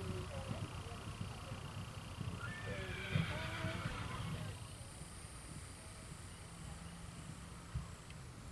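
Faint distant voices over a steady low outdoor rumble, with a single thump about three seconds in and another near the end.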